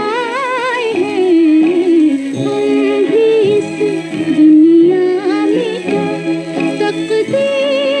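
A 1950s Hindi film song played from a 78 rpm record: a woman's voice singing with wide vibrato at the start and again near the end, over an orchestral accompaniment with held notes in between.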